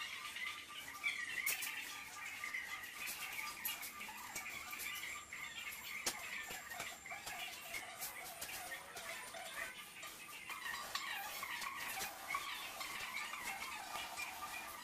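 Small birds chirping and twittering continuously, with a few faint clicks.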